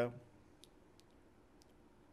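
The last syllable of a man's speech, then a few faint, scattered clicks over quiet room tone.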